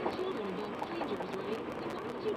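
A muffled person's voice, its pitch wavering up and down.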